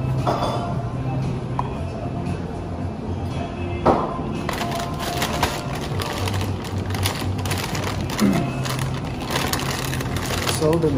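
Paper pharmacy bag rustling and crinkling as it is handled and opened, with a sharp snap about four seconds in and more continuous crinkling through the second half.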